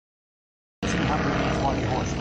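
Stearman biplane's radial engine and propeller running steadily in flight, starting abruptly a little under a second in, with an announcer's voice over it.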